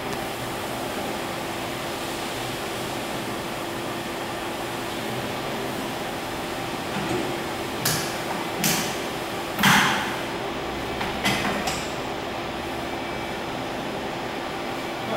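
Steady machinery hum with a low held tone, then a handful of sharp metal clacks and knocks from about halfway through for several seconds, the loudest a slightly longer one: a worker handling the clamps and metal parts of the robot's welding fixture.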